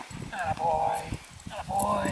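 German Shepherd whining in high, wavering cries, one about half a second in and another starting near the end, while it is held off biting a moving tug toy. Steps scuff in the snow underneath.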